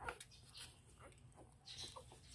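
Newborn Siberian husky puppies giving faint, short squeaks, one right at the start and another near the end.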